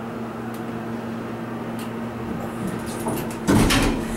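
Elevator car doors sliding partly open after a single quick tap of the door-open button in fire service Phase II 'peek' mode, where the doors reclose unless the button is held. A steady hum runs underneath, with a louder burst of noise near the end.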